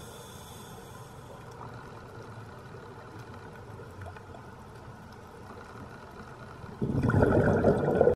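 Underwater reef sound: a low steady wash of water with faint scattered clicks. About seven seconds in, a loud rushing burst of bubbles cuts in, the kind a scuba diver's regulator makes on an exhale.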